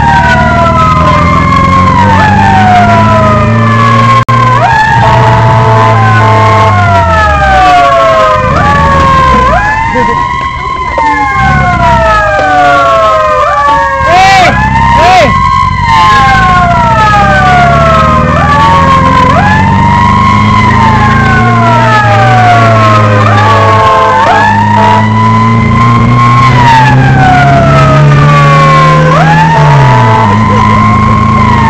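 Emergency-vehicle sirens wailing, each cycle a quick rise in pitch and a slower fall, repeating every few seconds, with two wails overlapping out of step. A vehicle engine rises and falls in pitch underneath. About halfway through the wail pattern breaks up briefly before resuming.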